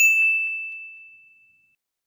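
A single bell-like ding sound effect: one clear high tone struck once, ringing out and fading away over about a second and a half.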